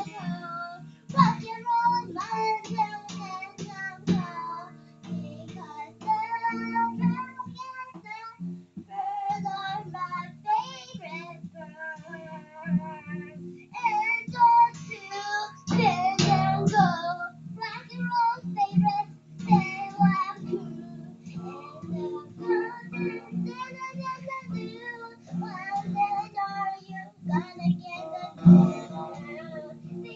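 A young girl singing while strumming an acoustic guitar laid flat across her lap, with repeated strums under her voice.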